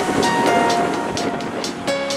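Background music: held notes that shift pitch over a steady beat of sharp percussion hits, with a rushing noise beneath.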